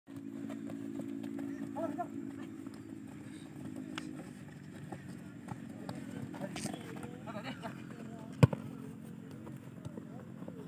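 Football players calling out to each other at a distance during a passing drill, over a steady low hum, with scattered light knocks. One sharp, loud thump stands out about eight and a half seconds in.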